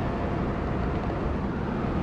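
Steady engine and road noise inside the cabin of a Suzuki four-wheel drive travelling along the road.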